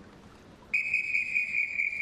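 Swimming referee's whistle: one long, steady blast starting just under a second in. In a backstroke start this long whistle calls the swimmers into the water.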